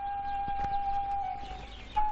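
One long held whistle-like note, a steady high tone that drifts slightly down in pitch and fades briefly near the end.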